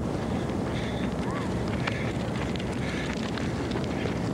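Wind buffeting the microphone: a steady low rumble with no breaks.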